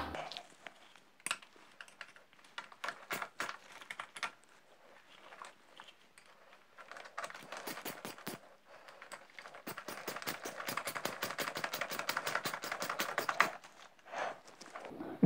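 Plastic cable ties being pulled tight around a moped's wiring: a few scattered clicks and handling noises, then a fast run of small ratcheting clicks through the second half as the ties are drawn through.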